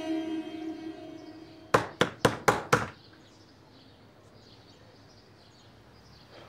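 Plucked-string score music fading out, then five quick knocks on a wooden door, about four a second, followed by faint room tone.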